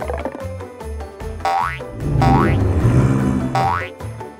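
Cartoon boing sound effects, three quick rising twangs, for bouncing on a trampoline, over upbeat background music with a steady beat.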